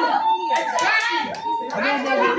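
Indistinct talk of children and adults in a hall, with a few sharp slaps or claps, such as gloved strikes or hand claps, mixed in.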